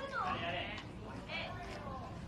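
Indistinct voices echoing in a large hall, with one short falling vocal call at the start, quieter than the microphone speech around it.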